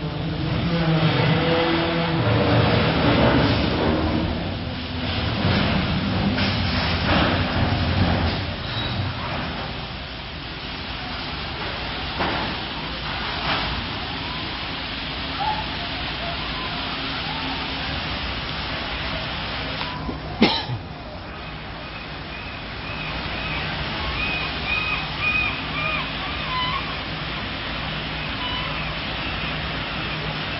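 Two cruise ships' sterns colliding and scraping, steel hulls and aft balconies grinding together. Heavy low rumbling and groaning for the first several seconds, one sharp crack about twenty seconds in, then high wavering squeals of metal scraping, like nails on a chalkboard.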